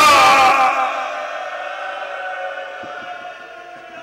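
A man's chanted recitation through a public-address system, its last wavering held note breaking off under a second in and trailing away in a long echo that fades over the next few seconds.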